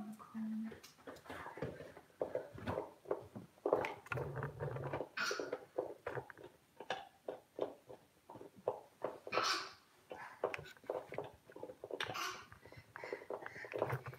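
Handling noise as a phone camera is picked up and moved around: irregular rustles and knocks, with a few short breathy bursts.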